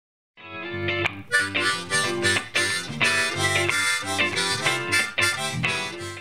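Harmonica playing a simple riff, a quick run of notes and chords that starts about half a second in.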